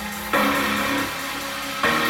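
Background music with sustained chords and drums; a new chord strikes about a third of a second in and again near the end.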